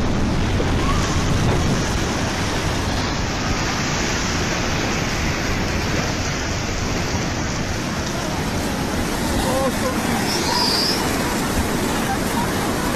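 Tsunami wave surging ashore, a steady heavy noise of rushing, churning water on a phone microphone. Faint shouting voices come in near the end.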